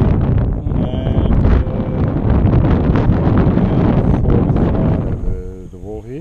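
Wind buffeting the camera microphone: a loud, steady rumbling noise, with a faint voice showing through now and then.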